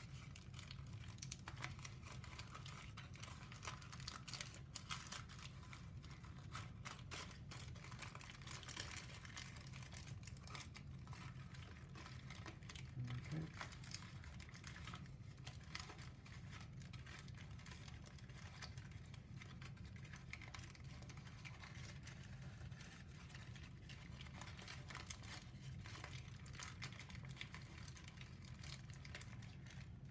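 Pleated origami paper rustling with many small, faint, irregular crackles as it is folded and pressed into shape by hand.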